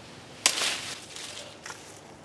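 A sudden rustle of avocado leaves and branches about half a second in, fading over about half a second, as an avocado is pulled from the tree with a pole fruit picker. A faint tap follows near the end.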